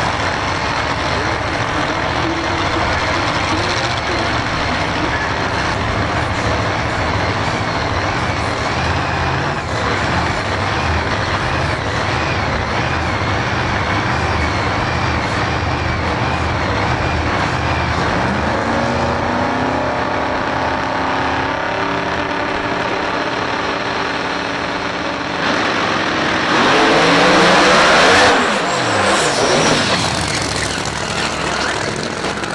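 Small-tire drag racing cars idling loudly at the starting line, their engines rising in pitch toward the end. About 26 seconds in they launch into a full-throttle pass, much louder, with the engine pitch sweeping up and then falling quickly as the cars run away down the track.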